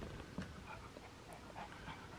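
Faint sounds from a small dog moving about close by, with quiet breathing and a light tick about half a second in.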